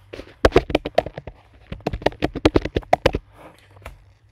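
Computer keyboard typing: a quick run of key clicks, about a dozen and a half keystrokes, that stops a little before the end.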